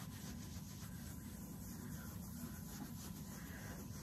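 Faint rubbing of a cloth wiping saddle soap over a handbag's Louis Vuitton Monogram coated canvas, a soft, uneven swishing.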